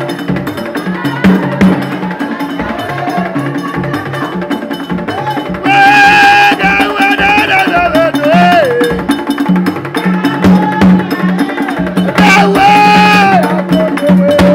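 Ceremonial percussion playing a fast, steady rhythm of sharp strokes. Twice a loud, high voice cries out over it in long held calls, first about six seconds in, ending on a falling glide, and again near the end.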